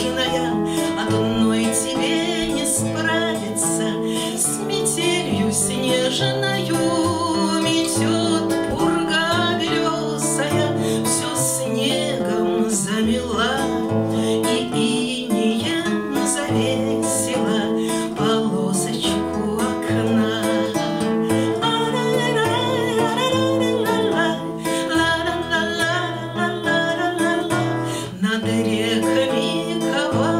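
A woman singing a bard song, accompanying herself on a strummed acoustic guitar.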